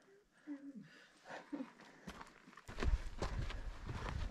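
Faint murmured talk. About two-thirds of the way in, it gives way to louder footsteps of several hikers on a sandy dirt trail, a rapid run of steps over a low rumble on the microphone.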